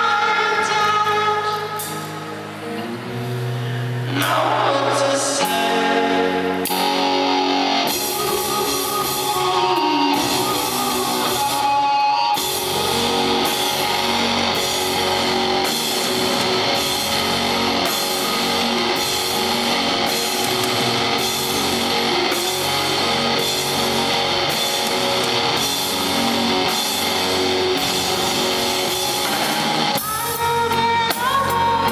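Live rock band playing: electric guitar, drums and singing. It starts sparser, with held guitar and vocal notes, and about twelve seconds in the full band thickens into a steady, driving drumbeat.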